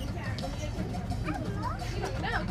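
Children's high-pitched voices calling out over a steady low hum, the calls growing in the second half.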